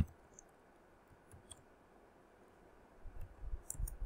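One sharp click at the very start, then a few faint clicks, from a computer being worked during a coding screencast. Soft low bumps come just before the end.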